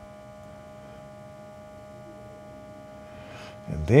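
EVAP smoke machine running, a steady electric hum of several fixed tones.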